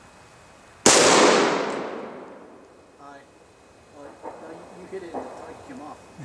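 A single rifle shot from an M4 carbine firing a 5.56 mm full metal jacket round, sharp and loud, with an echo that fades over about a second and a half. Faint voices follow.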